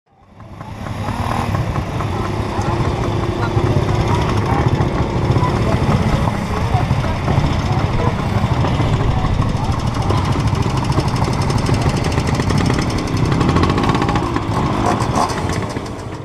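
Moped engines running, mixed with people talking. The sound fades in over the first second and cuts off at the end.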